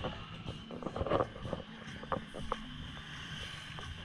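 Outdoor street ambience: a low steady engine hum from motorcycle traffic, with wind on the microphone and a few sharp clicks.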